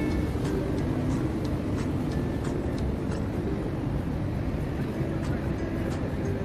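Steady low outdoor rumble on the microphone, with faint background music over it.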